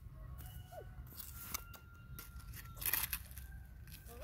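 A plastic toy shovel scraping and crunching into a pile of loose stone rubble and gravel, in scattered short scrapes, the loudest about three seconds in.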